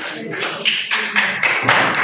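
A few people clapping: light, irregular hand claps, with voices underneath.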